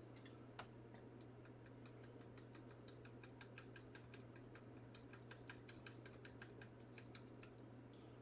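Faint computer keyboard typing: irregular light clicks, several a second in places, over a low steady hum.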